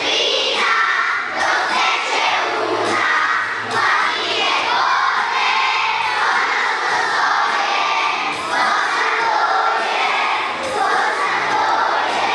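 A large group of young children singing together, many voices at once, steady and loud.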